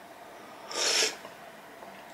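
One short slurp of hot ramen broth sipped from a spoon, just before a second in.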